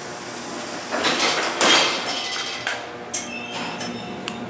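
Elevator car doors sliding shut, a rising and falling rush of noise that peaks about a second and a half in. A few light clicks of the car's floor buttons being pressed follow.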